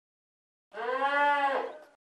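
A cow mooing once, a single call about a second long that dips in pitch at the end.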